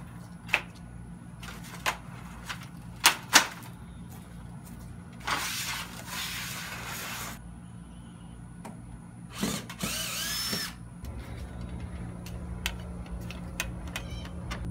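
An aluminium folding ladder clanks several times in the first few seconds as it is unfolded and its hinges lock. Then a power drill runs twice, for about two seconds and then about a second, backing screws out of the panels under the house.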